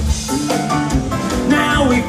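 Live band playing, with guitar, drums and a sung vocal line, picked up from the audience.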